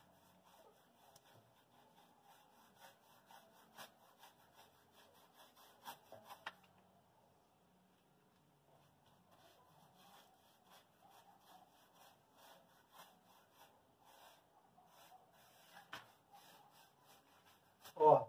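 Faint, irregular scratchy strokes of a wide paintbrush spreading paint over a rough, textured mortar wall, easing off for a few seconds in the middle.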